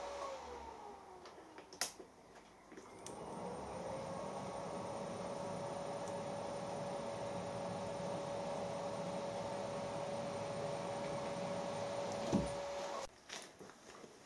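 Milling machine spindle motor winding down with a falling whine, then started again about three seconds in, its whine rising to speed and running steadily until it stops shortly before the end. A sharp click comes a couple of seconds in.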